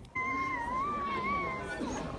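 A baby's high, wavering squeal, held as one long note for about a second and a half.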